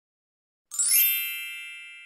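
A single bright chime sound effect, a 'ding' about two-thirds of a second in that rings down slowly, marking the equals sign and question mark appearing on screen.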